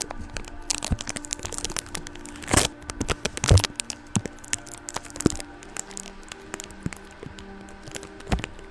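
Sticky tape handled right on a microphone: close, dense crackling and sharp pops as it sticks to and peels off the mic, the loudest pops about two and a half and three and a half seconds in. Faint steady background music lies underneath.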